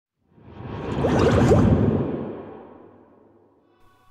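A whoosh sound effect: a rushing noise that swells over about a second and then fades away over the next two.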